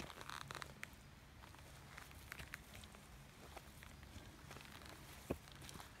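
Faint footsteps and rustling through leaf litter and undergrowth, with scattered small crackles and a sharper click near the start and another about five seconds in.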